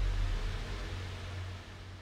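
A low steady hum under a faint hiss, fading away over the two seconds.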